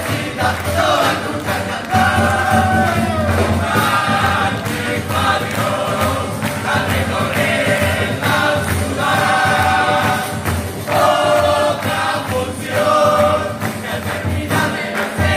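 A murga chorus of children singing together in unison phrases over Uruguayan murga percussion of bass drum, snare and cymbals.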